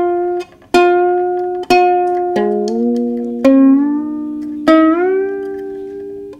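A Brüko soprano ukulele with freshly fitted fluorocarbon strings, strummed four times, each chord ringing out and fading. Between strums the pitch of some strings slides upward as they are tightened: the new strings are still stretching and have not yet settled, and they sound a bit like rubber bands.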